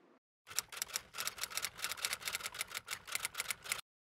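Typewriter sound effect: a rapid run of key clicks, about eight to ten a second, lasting about three seconds and starting and stopping abruptly.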